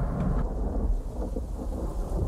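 A recorded thunderstorm sound effect: a steady low rumble of thunder with rain.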